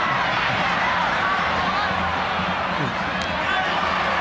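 Indistinct background chatter of several overlapping voices over a steady low hum.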